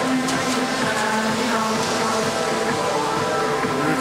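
Music with sustained notes playing over a steady background of crowd noise.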